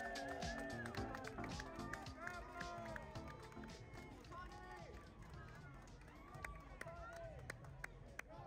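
Faint music with indistinct chatter of several voices, fading a little over the seconds, with scattered light clicks.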